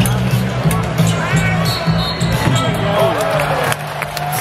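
Arena music with a steady pulsing beat over live basketball play: a basketball bouncing on the hardwood court and sneakers squeaking, with voices in the arena.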